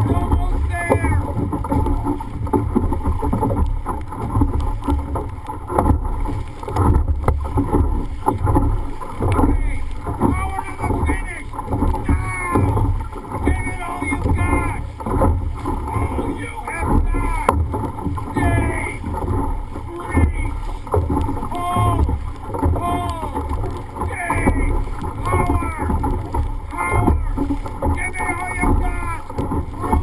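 Dragon boat crew paddling at race pace, about 70 strokes a minute: paddles splashing in a steady rhythm of roughly one stroke a second, with wind on the microphone and short shouted calls recurring through the piece.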